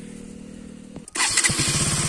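A KTM RC 200's single-cylinder engine being started: a sudden burst about halfway through as it catches. It then settles into an even idle with rapid, regular firing beats.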